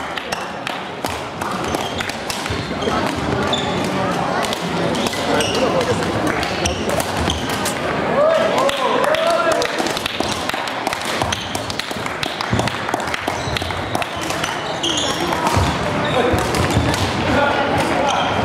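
Badminton rally in a large sports hall: sharp racket strikes on the shuttlecock and quick footfalls on the wooden court floor, irregular and echoing, over a background of voices and play from neighbouring courts.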